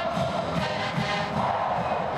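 A marching band playing, with a quick steady drum beat under the brass, and a stadium crowd cheering along.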